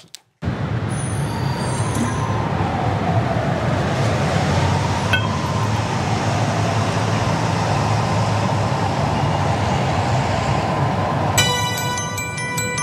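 Steady outdoor background noise, a low rushing rumble and hiss with a faint wavering tone, from the audio of a phone-shot clip. Near the end a chiming glockenspiel-like music-box melody begins.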